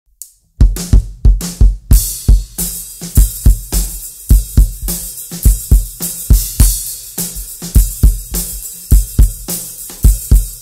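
Recorded drum kit played back from a DAW mix: a busy bass drum pattern of hard low kicks, several a second, under a steady wash of cymbals and hi-hat, from EQ'd overhead and ride mics mixed with the bass drum tracks. Playback starts about half a second in.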